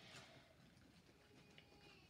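Near silence, with faint sounds of a plastic spoon stirring slime in a bowl.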